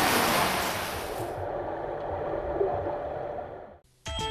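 Indoor swimming pool ambience: a steady wash of splashing water and echoing hall noise from swimmers. It turns duller about a second and a half in and fades out just before the end.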